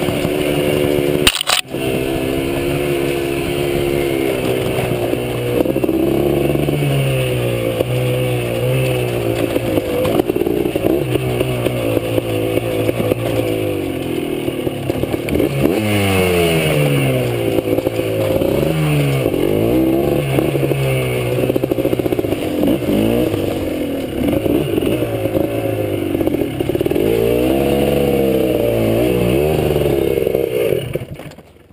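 Dirt bike engine running under load on a trail, its pitch rising and falling constantly with throttle and gear changes. A brief sharp knock with a momentary dip in sound about a second and a half in.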